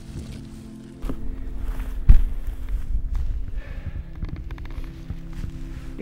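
Footsteps through low tundra brush, with irregular low thumps and a heavy thud about two seconds in, under a steady sustained music bed.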